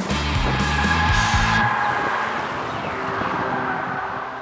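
Channel intro music with loud chords, mixed with car sound effects: a car at speed with a long high squeal like tyres. The music stops about a second and a half in, and the squeal slowly falls in pitch and fades.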